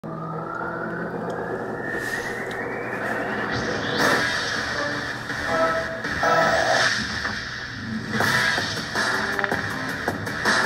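A TV sports show's electronic intro theme music, heard through a television's speaker. A rising sweep builds over the first four seconds, then heavy whooshing hits land about every two seconds.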